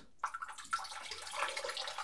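Water running steadily from a tap, starting about a quarter second in, with a light crackling splash.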